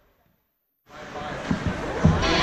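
Near silence for the first second, then ice hockey rink sound cuts in abruptly: voices and a few dull thuds.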